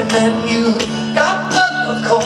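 Live band playing with a male lead vocal over guitar, upright bass and fiddle.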